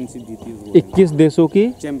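A man speaking Hindi.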